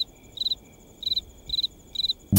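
A cricket chirping: short, high chirps of a few quick pulses each, evenly spaced about twice a second.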